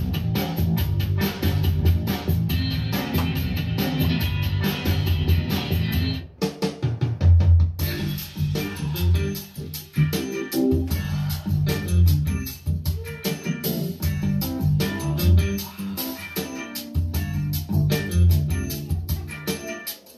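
A song with a steady drum beat, played through a pair of Dayton B652 bookshelf speakers and picked up by a microphone in the room. The sound thins out briefly about six seconds in.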